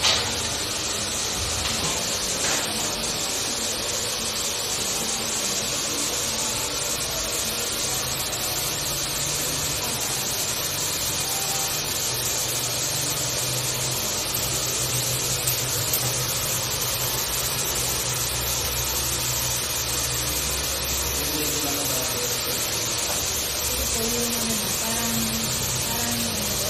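A steady airy hiss with faint music underneath, and a low hum that swells in the middle and then fades.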